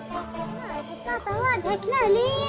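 Background music with high-pitched, child-like voices calling out over it from about a second in, their pitch swooping up and down.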